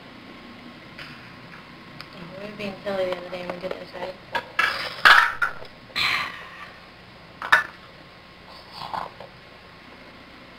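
Toy blocks knocking and clattering as a toddler handles them, a handful of sharp knocks with the loudest just after five seconds in. A short wavering voice sound comes before them, about two seconds in.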